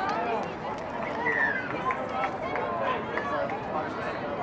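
Players' voices calling out during a touch football game, several overlapping shouts and calls, with one longer falling call about a second in.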